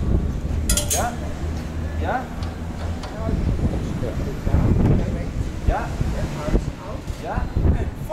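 Short, scattered voices over a low steady rumble, with a brief metallic clink about a second in.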